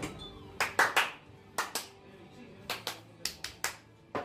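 Hands clapping in a loose rhythm, mostly two quick claps at a time about once a second, over faint background music.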